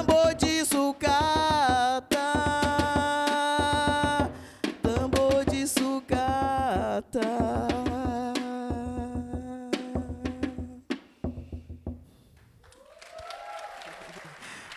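A woman singing long held notes into a microphone over scrap-percussion drums (a plastic barrel drum and a tin-can drum beaten with sticks) in a steady beat. The song ends about eleven seconds in, and applause starts to rise near the end.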